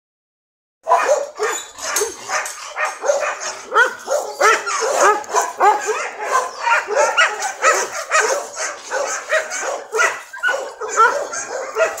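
A small dog yapping and yelping non-stop, two or three short barks a second, starting about a second in.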